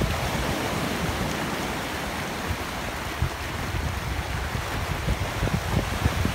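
Sea surf breaking and washing over rocks and beach pebbles where a river runs into the sea, a steady rushing of water. Wind buffets the phone microphone in low, uneven gusts.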